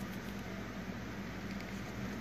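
Steady, low-level background hiss with a faint low hum underneath; no distinct events.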